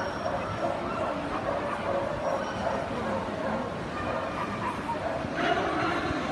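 A dog yipping and barking over the steady babble of a crowded hall, with a louder call near the end.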